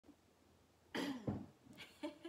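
A woman coughing about a second in, in two quick bursts close together.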